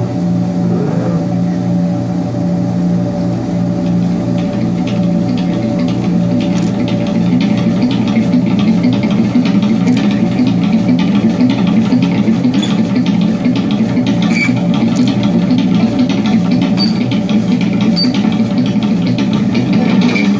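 Experimental improvised electric guitar and modular synthesizer electronics played live: a dense, steady low drone with a noisy, engine-like texture. It grows a little louder from about seven seconds in, and scattered clicks and short high blips come in during the second half.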